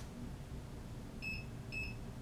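Two short, high electronic beeps about half a second apart.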